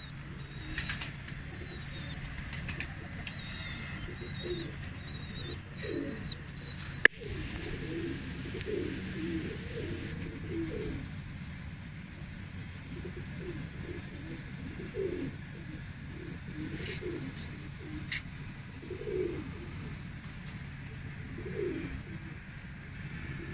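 Domestic pigeons cooing, many short low calls one after another, with high short chirps during the first several seconds. A single sharp click about seven seconds in is the loudest sound.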